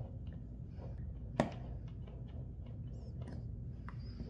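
Faint handling sounds with one sharp click about a second and a half in, as the red test lead's plug is pulled out of its jack on the multimeter, over a low steady room hum.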